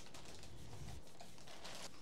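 Quiet, steady room tone with faint light clicks and rustle of handling while the 3D printer frame is being set down beside its packing.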